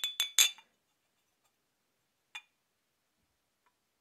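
Ceramic mugs clinking against each other: a quick run of three clinks with a short ring, then a single quieter clink about two and a half seconds in.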